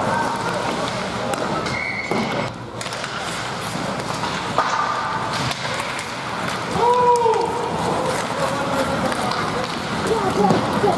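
Ice hockey rink ambience during play: spectator voices in steady chatter, with sticks and the puck knocking on the ice and boards. One drawn-out shout comes about 7 s in.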